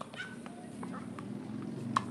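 A single sharp pock of a tennis racket striking the ball on a serve, just before the end, over faint murmuring voices.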